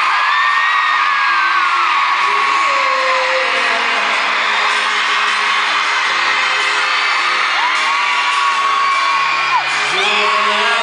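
Live pop band music with a violin and a cello playing held notes, under continuous loud high-pitched screaming from a concert crowd. Single shrieks are held above the music, one gliding up and down near the start and another held for about two seconds near the end.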